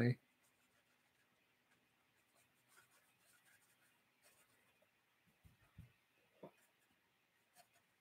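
Faint soft strokes of a watercolour brush dragging across paper. A few brief, faint low sounds come a little past the middle.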